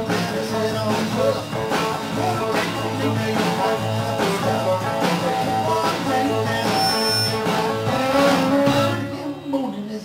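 A live band playing a blues-rock song on electric guitar, electric bass and drum kit, with a steady beat. The playing thins out near the end.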